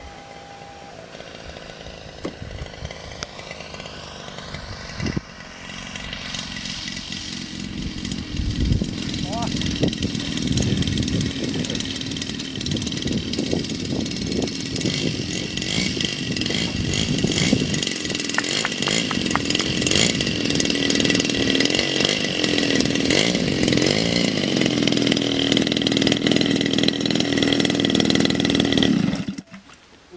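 The 50cc CRRC Pro GF50i two-stroke gasoline engine of an RC Yak-54 model aircraft, running. It is fainter at first while the plane is at a distance and grows louder from about six seconds in. Later it runs near by, its pitch wavering as the throttle is worked, and cuts out about a second before the end.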